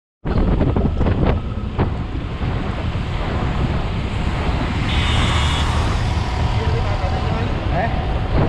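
Wind buffeting the microphone of a camera riding on a moving bicycle, a steady rushing rumble heaviest in the low range, with a few sharp knocks in the first two seconds.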